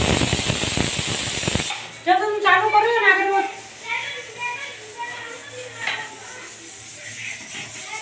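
A harsh rushing hiss for about the first second and a half, which stops abruptly, followed by voices talking.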